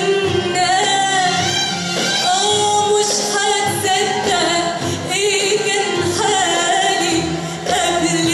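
A female singer sings an ornamented Arabic melody with wavering, trill-like pitch turns, accompanied by an Arabic orchestra of oud and strings.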